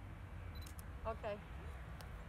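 A camera shutter firing twice in quick succession just under a second in, right after a short high beep.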